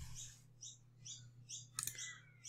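A bird chirping faintly and repeatedly, about three short falling chirps a second, over a low steady hum. A single computer mouse click comes near the end.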